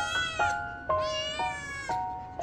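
Scottish Fold kitten meowing twice, high-pitched, each meow under a second long, begging for the treats it is being held back from. Background music with steady held notes plays underneath.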